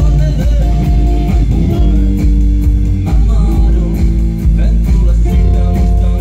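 A live rock band playing loud, with electric guitar, bass guitar and drum kit over a steady beat.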